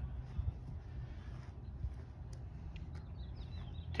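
Quiet outdoor background: a low steady rumble, with a few faint bird chirps a little after three seconds in.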